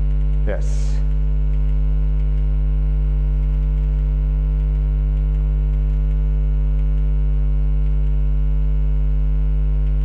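Loud, steady electrical mains hum: a low buzz with a stack of higher overtones, unchanging throughout.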